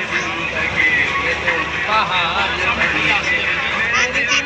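Voices talking and calling inside a crowded bus, over the steady low rumble of the bus running.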